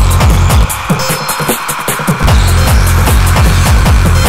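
Electronic dance track with a fast, pounding kick-drum and bass pulse. The low end drops out for about a second and a half near the start, leaving only the higher synth layers, then the beat comes back in.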